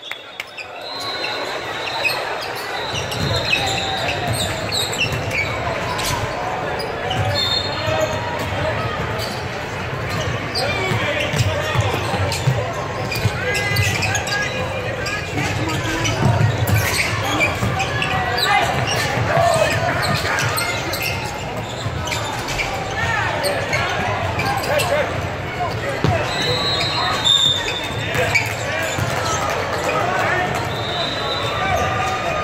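Indoor basketball game in a large, echoing gym: a ball bouncing on the hardwood court and players and spectators talking and calling out, with a few short high squeaks.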